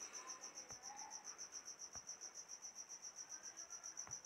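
Faint cricket chirping in the background: a high, even pulse about seven times a second that holds steady throughout, with two soft clicks.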